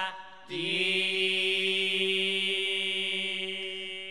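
Male voices of an Assamese Nagara Naam devotional chant holding one long sustained note. It breaks off briefly just after the start, slides back in, and fades slowly, with no drum heard.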